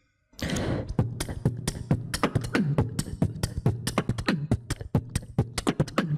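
A man beatboxing into a handheld microphone: after a brief silence, a fast run of sharp percussive mouth sounds with deep, falling bass tones.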